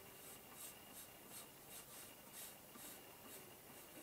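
Coloured pencil scratching faintly on paper as a curved line is drawn, in a run of short strokes about two or three a second.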